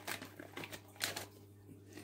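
Faint rustling and a soft tap or two from hands handling a peel-off nose pore strip and its packet, over a low steady hum.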